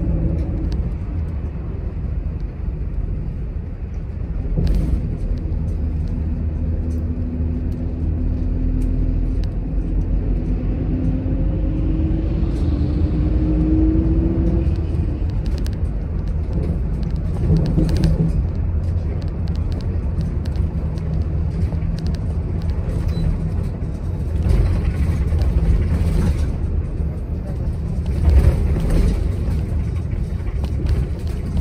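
Interior of a city express bus under way: a steady low engine and road rumble, with a whine that climbs in pitch from about six to fourteen seconds in as the bus gathers speed. A few short knocks and rattles come through, around four seconds in, near the middle and near the end.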